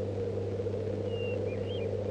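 A steady low hum with a few faint, short, high chirps about a second in, like small birds calling.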